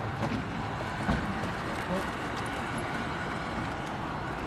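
Steady outdoor background noise with a few short, indistinct voices of people nearby.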